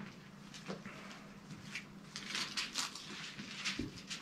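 Faint, scattered light rustling over a low steady hum in a quiet small room.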